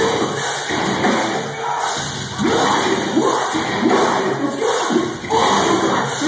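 Live metalcore band playing loud in a club, with shouted vocals and a crowd yelling along.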